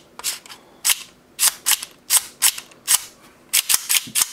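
Airsoft Hi-Capa pistol with an Airsoft Masterpiece 22LR slide being racked by hand over and over: sharp metallic clicks, mostly in quick pairs, as the slide is pulled back and snaps forward under its recoil spring.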